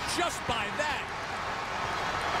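Steady noise of a large stadium crowd, with a man's voice briefly in the first second.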